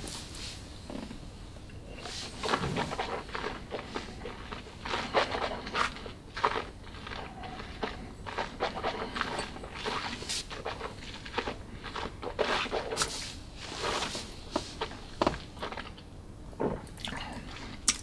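A sip of bourbon from a tulip-shaped nosing glass, held and worked around the mouth while tasting: a string of soft, irregular wet mouth clicks and lip smacks.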